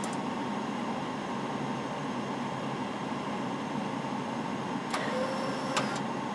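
Steady hiss of airflow and air conditioning in an airliner cockpit during the final seconds of a landing, with two short, sharp clicks about five and six seconds in.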